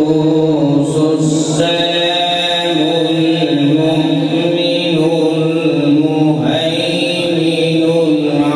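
A man's voice chanting melodically over a microphone in long held notes with slow turns of pitch, in the manner of Islamic devotional recitation.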